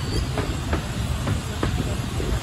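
Miniature-railway coaches rolling past with a low rumble, the wheels clicking over a rail joint in two pairs of clicks.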